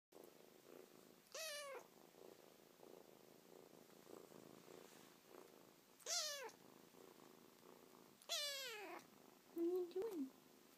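Manx kitten purring softly and steadily, broken by three high-pitched meows that each fall in pitch: one about a second and a half in, one about six seconds in, and a longer one near the end.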